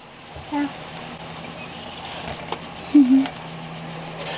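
A child's short, quiet "yeah" and a second brief vocal sound a few seconds later, over a steady low hum. There is a faint click near the middle.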